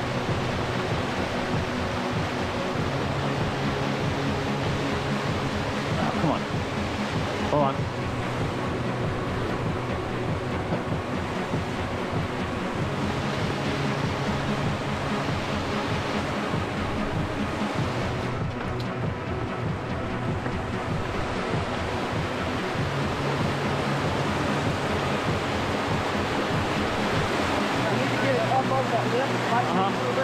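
Steady rush of whitewater pouring through a narrow rapid over granite ledges.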